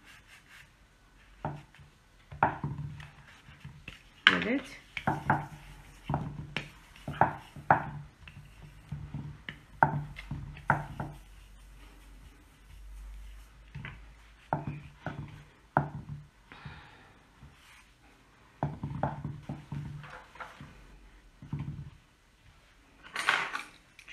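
Plastic fondant smoother and hands rubbing over fondant on a cake and knocking against its glass plate: a run of short, irregular taps and scrapes.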